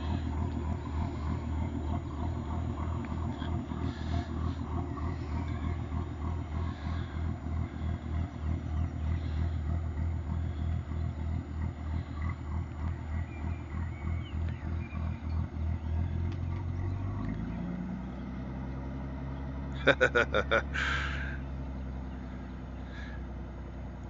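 Inboard engine of a wooden Venetian-style water-taxi launch running slowly past with a steady, pulsing exhaust beat, held back at low throttle though it sounds able to go much faster. About two-thirds of the way through the beat fades into a smoother, lower drone as the boat moves away. A man laughs briefly near the end.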